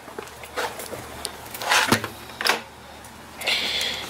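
A travel trailer's entry door being unlatched and opened, then steps up into the trailer: a few separate clicks and knocks, the loudest about two seconds in.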